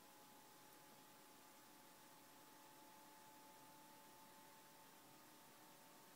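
Near silence: a very faint, steady whir with a thin constant tone from an ASUS G73 laptop's cooling fans running after power-on.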